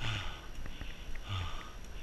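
A person breathing hard with exertion on a steep uphill climb: heavy, rhythmic breaths, one about every second and a quarter, each a rushing huff with a low puff beneath it.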